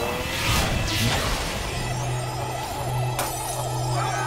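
Cartoon sound effects over background music: a whoosh about half a second in, then a steady low hum with a wavering, warbling tone, as of a sci-fi warp, and a sudden crash-like hit about three seconds in.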